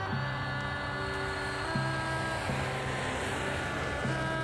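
An airliner flying overhead, its engine noise swelling to a peak about three seconds in and then easing, over film score music with long held notes.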